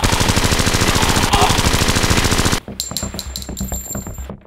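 A long burst of rapid automatic gunfire that stops abruptly after about two and a half seconds, followed by scattered clicks and a faint high ringing.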